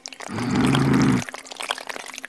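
Wet sloshing and gurgling of liquid mud. It is thick and heavy for about the first second, then thins to a scatter of small wet clicks.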